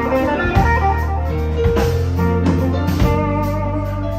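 Live blues band playing: quick electric guitar lead lines over bass, drums and keyboard.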